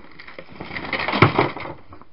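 Hands rummaging through a cluttered pile of cables and boxes: rustling and clattering, with one sharp knock about a second in.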